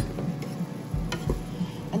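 Wooden spoon stirring stir-fried rice noodles and vegetables in a nonstick frying pan, with a few sharp clicks of the spoon against the pan, near the start and about a second in, over a light sizzle.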